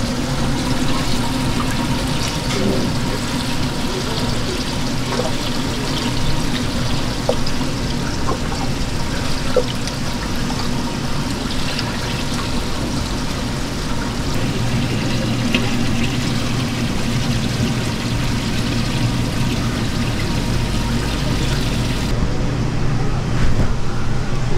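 Steady running and bubbling water in a live seafood tank, from its aeration and water inflow. Near the end the sound turns duller as the highest hiss drops out.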